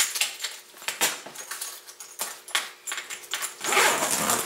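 Zipper slider of a soft-sided suitcase being pulled along the main zipper to re-mesh teeth that were split apart with a ballpoint pen, resealing the case. It sounds as a string of short rasps and clicks, with a longer zip just before the end.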